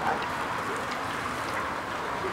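Steady background noise of street ambience, with no distinct event standing out; only a few faint small clicks.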